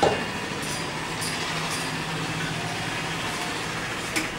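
Steady rushing background noise with a faint low hum, and a brief sharp knock right at the start.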